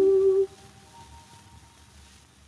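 The last held note of an operetta duet with orchestra on a 78 rpm shellac record, cutting off about half a second in, followed by the record's faint surface hiss.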